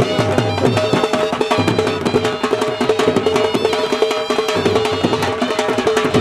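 Punjabi dhol drumming music: a fast, steady drum beat with a sustained melodic line over it.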